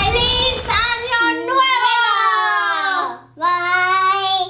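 A child's and a woman's high voices singing out long, drawn-out notes, one held note gliding downward before a brief break, then one more held note near the end. A low noisy burst sits under the voices at the very start.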